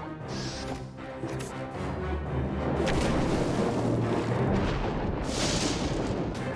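Cartoon background music with a deep rumble of thunder that swells up about two seconds in, followed by a sharper burst near the end.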